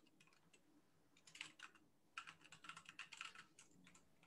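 Faint typing on a computer keyboard: a short flurry of keystrokes about a second in, then a longer run of keystrokes from about two seconds in.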